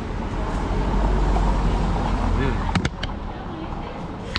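A car passing by on the street, a low engine and tyre rumble that cuts off suddenly a little under three seconds in, followed by a few sharp clicks.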